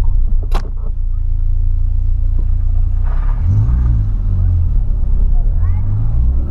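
Volkswagen Polo sedan driving, heard from inside the cabin: a steady low engine and road drone, with the engine note swelling up and back down about halfway through and again briefly near the end.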